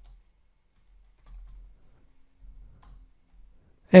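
Faint computer keyboard typing: a few scattered, quiet keystrokes.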